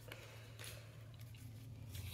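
Faint handling of trading cards and their pack wrapper: a light click at the start, then soft rustling over a steady low hum.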